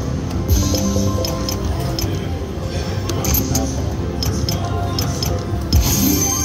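Video slot machine playing its electronic spin music, with short sharp clicks and clinks scattered through it as the symbols land.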